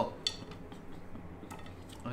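A light clink and a few faint clicks of a chicken skewer knocking against a ceramic plate as it is handled.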